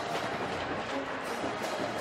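Music playing over the steady noise of a large stadium crowd.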